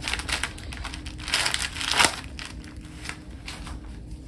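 Crinkling and rustling handling noise, as of plastic or paper being handled. It comes in short irregular crackles, with a louder spell around the middle.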